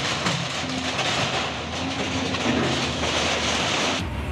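Excavator demolishing a concrete building: a continuous, dense noise of crunching, clattering debris and metal sheeting over the machine's engine. The noise starts suddenly just before and holds steady.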